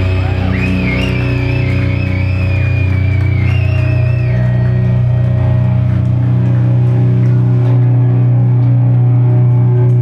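A heavy rock band playing live, with loud guitars holding a steady low sustained chord. A high, wavering guitar line bends over it for the first four seconds or so, then drops out, leaving the drone.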